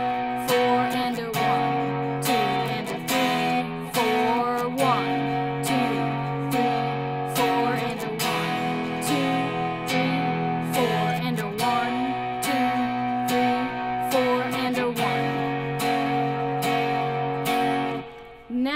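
Telecaster-style electric guitar strummed with a pick on a clean tone, in a steady rhythmic country strumming pattern through the barre chords F-sharp major, E major and B major.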